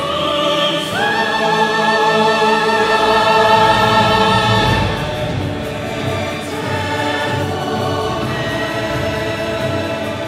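Vocal soloists singing with a full orchestra of strings, winds, brass and percussion. A long note is held with vibrato from about a second in until about five seconds, then the orchestra carries on under the voices.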